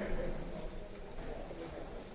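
Faint footsteps and shuffling in a church sanctuary, under a low murmur of voices.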